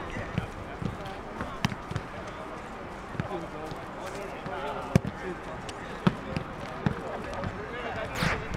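Football being kicked in a training passing drill: several sharp thuds of boot on ball, the loudest about five and six seconds in, over players' indistinct voices and calls.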